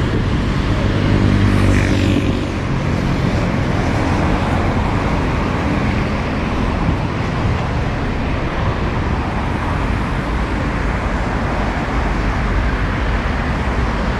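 Steady traffic noise from a busy multi-lane city avenue. A vehicle engine's low hum stands out over it for the first two seconds or so.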